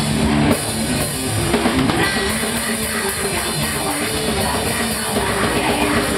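Live heavy rock band playing: distorted electric guitar, bass guitar and a drum kit with cymbals, loud and continuous.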